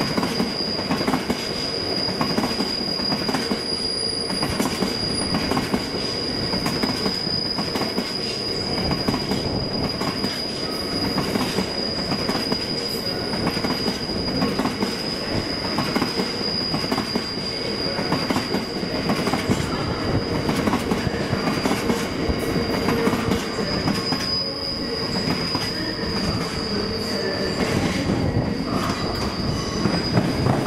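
Covered hopper wagons of a freight train rolling past on curved track. The wheels give one steady high-pitched squeal throughout, with frequent clicks and knocks as the wheels run over the rail joints and pointwork.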